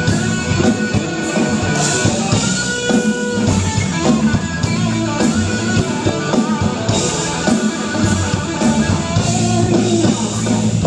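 Live rock band playing an instrumental stretch without singing: electric guitar over a drum kit, with a steady beat of cymbal strokes.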